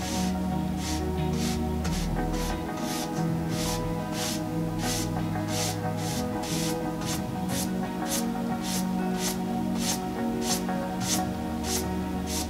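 Background music with steady held chords, over a rapid run of swishes as a dry paintbrush is dragged back and forth across a painted board, about two or three strokes a second.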